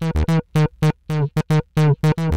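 Synth bass playing a quick run of short, sharply cut notes. It is driven hard through Ableton's Glue Compressor, with high makeup gain and soft clipping, and ducked by the kick drum through the compressor's sidechain.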